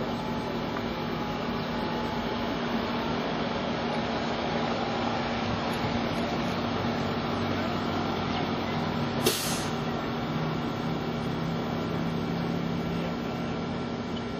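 Steady background noise with a few faint steady hums, and one brief sharp hiss about nine seconds in.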